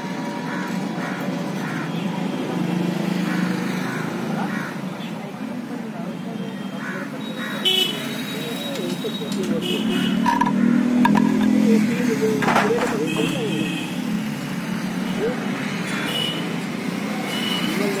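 Street traffic rumbling, with short vehicle horn toots now and then and background voices; the traffic swells about two-thirds of the way in.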